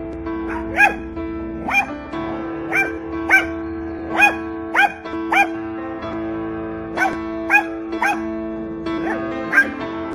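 A small dog barking at a bird in short, sharp, high-pitched yaps, about a dozen in quick uneven succession with a brief pause in the middle. Background music with sustained notes plays under the barking.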